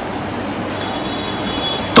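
Steady background noise filling a pause in speech, with a faint high whine in the middle.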